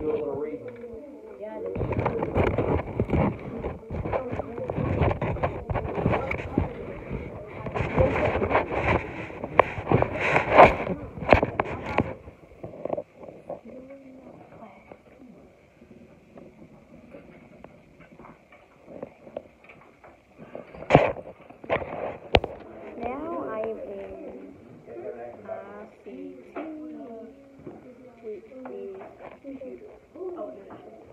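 Phone handling noise: the microphone rubs and knocks against a fleece jacket for about twelve seconds. After that it is quieter, with a sharp knock about two thirds of the way in and muffled voices in the background near the end.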